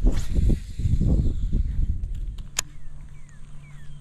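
A cast with a baitcasting rod and reel: a swish as the rod sweeps through at the start, then wind buffeting the microphone. A sharp click comes about two and a half seconds in, followed by a steady low hum.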